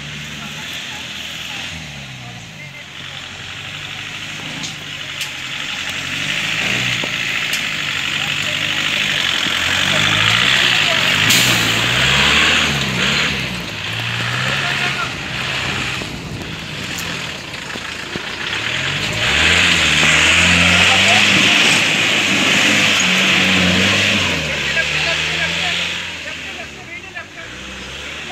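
Off-road racing jeep's engine revving hard, its pitch rising and falling again and again as it is driven through the course. It is loudest twice, about ten seconds in and again about twenty seconds in, with voices shouting over it.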